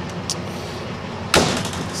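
A single sharp metal slam about a second and a half in, as a door or hinged metal panel at the back of the ambulance body is shut, heard over a low steady hum.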